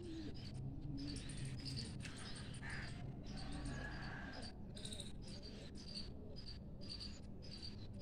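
Faint, short high-pitched chirps repeating about twice a second, over a steady low hum.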